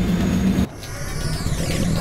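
Sound-designed vehicle rumble: a steady low drone cuts off abruptly about two-thirds of a second in, followed by high sweeping whooshes as the sound builds back up.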